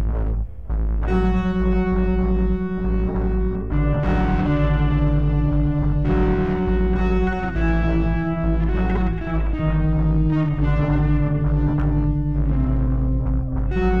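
Stratocaster-style electric guitar played slowly in a blues style, long sustained notes and double-stops changing every second or two, over a deep low drone.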